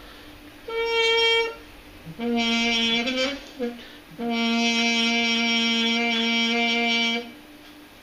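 Trumpet played with a Yamaha Silent Brass practice mute in the bell: a short higher note, then a lower phrase and a long held note about an octave below.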